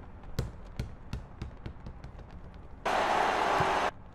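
A basketball being dribbled, bouncing about two to three times a second. About three seconds in, a loud burst of hissing noise lasting about a second cuts in and stops abruptly.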